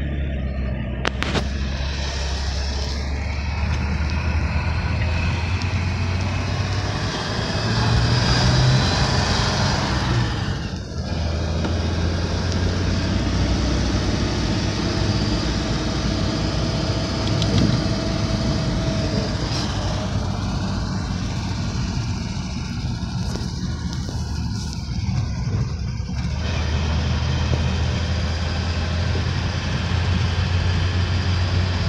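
The supercharged straight-six engine of a 1938 Graham Sharknose running under way, heard from inside the cabin. Its note rises about eight seconds in, dips briefly near eleven seconds, and settles to a lower, steady drone near the end.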